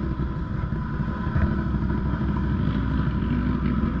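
ATV engine running steadily at low revs, rising slightly in pitch near the end.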